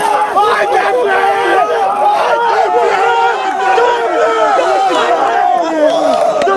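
A group of men shouting and talking over one another, with several raised voices at once and no pause.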